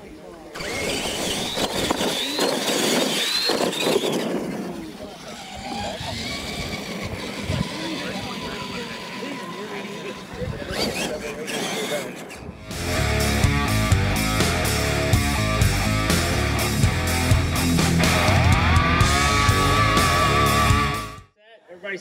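Radio-controlled monster trucks racing on a dirt track, their electric motors whining up and down in pitch over the noise of tyres and voices. About halfway in this cuts off abruptly, and background music with a heavy beat follows until near the end.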